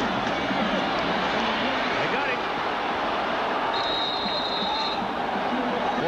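A large stadium crowd's steady noise on a broadcast soundtrack. A single high steady tone sounds for about a second, a little after the middle.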